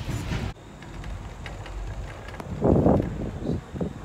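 Low rumble of a moving gondola cabin on its cable, with a louder rumbling surge about three-quarters of the way through. The higher hiss cuts off abruptly half a second in.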